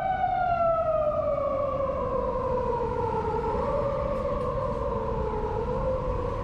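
A siren wailing: one pitched tone that slowly falls in pitch over several seconds, with a low traffic rumble underneath.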